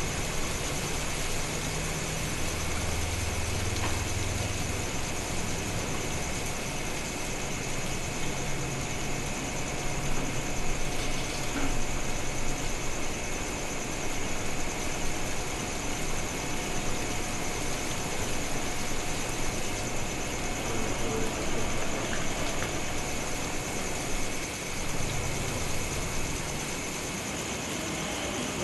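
Steady room tone: an even hiss with a low hum underneath, unchanging throughout.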